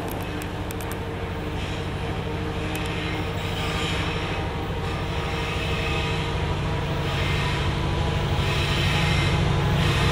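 Diesel locomotive approaching, its engine a steady low drone that grows slowly louder.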